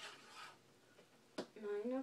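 Soft rubbing as the hands of a plastic teaching clock are turned to a new time, then a single sharp click about one and a half seconds in.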